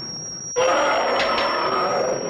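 King Kong's roar as a film sound effect: a long, harsh roar that grows louder about half a second in, over a thin steady high whine.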